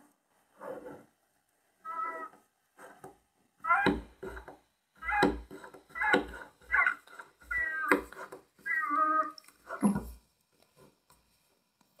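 Hand pump of a Cafelffe portable espresso maker being pressed repeatedly, about one stroke a second, building pressure to push water through a Nespresso capsule. A few short pitched squeaks come among the strokes.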